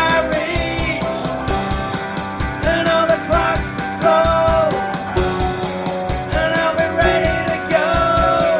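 Rock song with a male lead vocal singing held notes over a steady drum beat; the vocal is recorded through a condenser mic and valve preamp.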